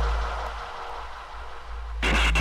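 A quiet breakdown in a hardcore acid techno vinyl mix: the beat and bass fall away about halfway through, leaving a thin wash of hiss and faint tones.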